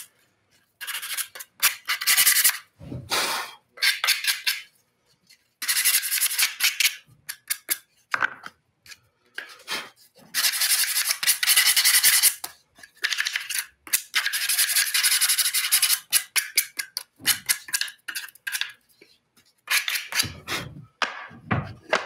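Hand filing or sanding of the freshly sawn edges of a small wooden box half, cleaning up the cut: runs of quick scratchy back-and-forth strokes with short pauses between them, the longest runs about ten and fourteen seconds in. A few light knocks of wood being handled near the end.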